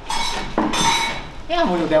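Metal kitchenware clinking and clattering in two short bursts in the first second, with a ringing edge. A man's voice follows.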